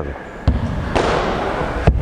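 Sneakers landing on a wooden gym floor as a boxer steps in to punch. There is a thud about half a second in and a sharper knock near the end, with scuffing between.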